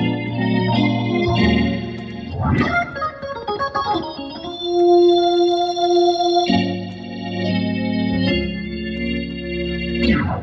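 1960s Hammond A100 organ played through a Leslie speaker, with sustained chords that change every second or so. There is a quick run up and down about two and a half seconds in, and a long held chord in the middle.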